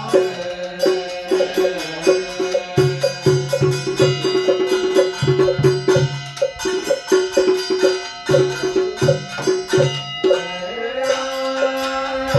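Traditional ritual music: quick, irregular drum and wood-block strikes over a sustained pitched melody, with a new held note rising in near the end.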